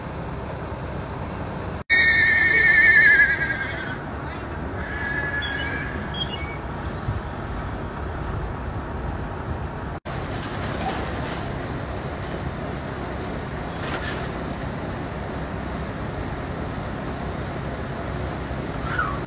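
A horse whinnying once, loudly, about two seconds in: a long wavering call lasting about two seconds.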